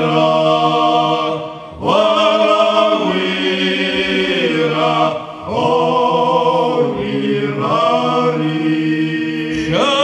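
A group of men singing together into microphones in long held phrases, a steady low drone note held beneath the lead voice. The voices break for breath between phrases about every three to four seconds.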